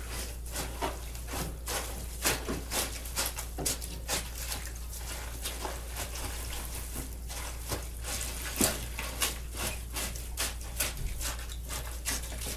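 Hands working soaked shredded newspaper in a plastic bucket, checking the paper-mache pulp for wetness: irregular wet squishes and crackles. A steady low hum runs underneath.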